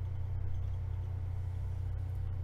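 A steady low-pitched hum, with no distinct event.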